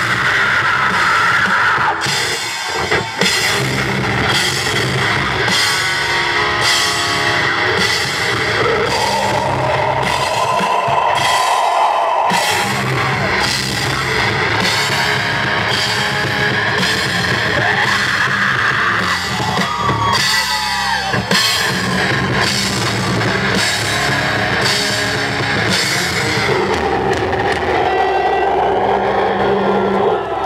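Live heavy metal band playing: distorted guitars and bass over a drum kit, with heavy cymbal-and-drum strikes falling about once a second. The strikes thin out near the end.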